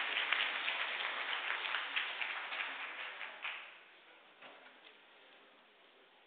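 A congregation applauding, a dense patter of many hands clapping that dies away about three and a half seconds in, leaving a few stray clicks.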